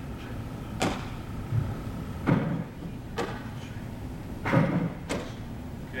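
Baseballs smacking into a fielder's glove during a pitching-machine catching drill: about five sharp knocks spaced roughly a second apart.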